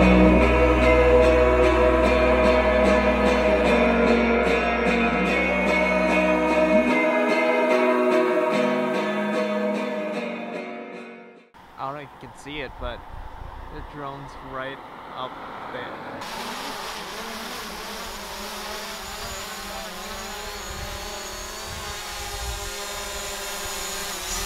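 Guitar background music fades out over the first ten seconds or so. After a short gap, a small quadcopter drone's propellers run steadily, a quieter whirring with a faint high whine, until near the end.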